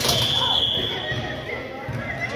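A whistle blown once, a steady high tone lasting about a second, over a basketball bouncing on a hardwood gym floor with the hall's echo.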